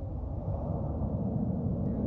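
Steady low rumble of wind buffeting the microphone outdoors, with no distinct sounds standing out.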